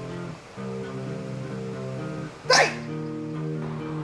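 Guitar music plays throughout. About two and a half seconds in, one short, loud burst as a sword chops into a wooden pole, biting into the wood without cutting through.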